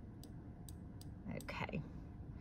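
Computer mouse button clicking, a sharp light click about every half second as short brush strokes are drawn, followed about a second and a half in by a brief faint bit of voice.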